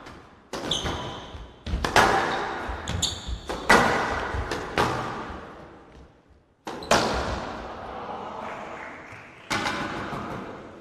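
Squash rally on a glass court: sharp racket-on-ball and ball-on-wall impacts every second or so, each ringing out in the hall, with a couple of brief high squeaks of court shoes about one and three seconds in.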